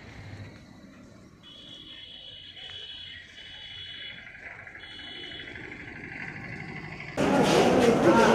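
Quiet outdoor background with a high, thin trilling in several stretches of about a second each. About a second before the end it cuts suddenly to loud indoor voices and bustle.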